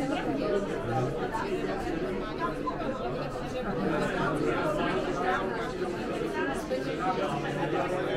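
Chatter of many people talking at once at tables, voices overlapping so that no single one stands out.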